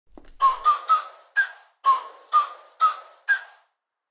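Background music: a short melody of high, whistle-like notes played in phrases of four, breaking off briefly near the end.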